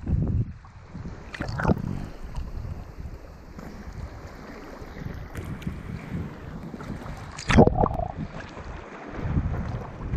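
Seawater sloshing and splashing around a GoPro camera held at the waterline by a swimming snorkeler, with a low rumble throughout. Louder splashes come about one and a half seconds in and again about seven and a half seconds in, and the splashing builds near the end as the swimmer kicks his fins up into a dive.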